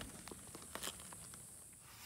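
Quiet, with a few faint clicks and rustles in the first second or so.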